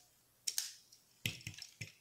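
Plastic parts of a Transformers Titans Returns Voyager-class Megatron action figure clicking as its lower-arm panel is flipped out and the arm is worked: a few short, sharp clicks spread through the two seconds.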